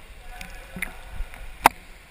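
Pool water splashing and lapping around a GoPro held half-submerged at the surface, with a few small splashes and one sharp knock or splash about one and a half seconds in.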